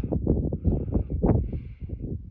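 Wind buffeting the phone's microphone in uneven gusts, a low rumbling that swells and drops.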